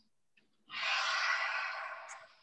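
A person breathing out audibly close to the microphone: one long, breathy exhale starting a little under a second in, taken between repetitions of a bridge exercise.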